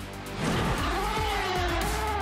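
A Formula One car's high-pitched engine whine that swells about half a second in and then slowly falls in pitch, over background music with a steady low bass.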